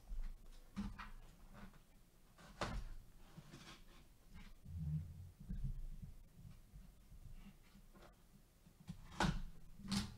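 Cardboard box being handled and turned over on a table: faint scrapes and soft knocks of cardboard, the clearest about two and a half seconds in and again near the end.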